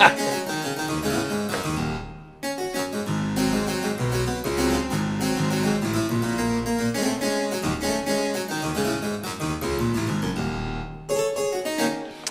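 Sampled harpsichord from IK Multimedia Philharmonik 2's 'Harpsi-Pad 2 Octaves' patch, a harpsichord doubled two octaves apart and layered with a synth pad that adds bottom, played as a quick, busy run of notes. The playing breaks off briefly about two seconds in, then runs on, with another short break near the end.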